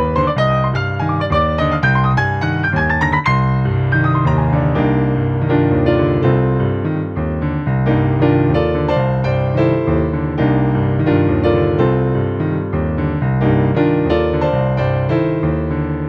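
Yamaha digital piano played solo in a busy jazz style: a steady repeating low bass figure runs under quick treble notes, with a fast rising run about three seconds in.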